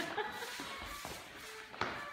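Dancers' shoes stepping and shuffling on a wooden dance floor, with one sharper step a little before the end.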